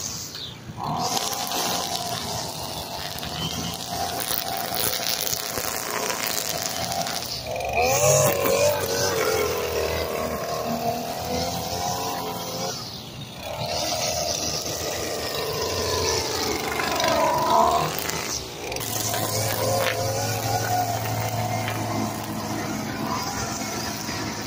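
String trimmer running hard, its whine sagging and recovering in pitch as the line cuts grass, with three brief drops where the throttle eases off.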